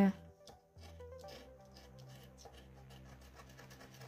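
A lottery scratch card's coating being scraped off with the edge of a small metal spoon: a quick run of light, dry scrapes.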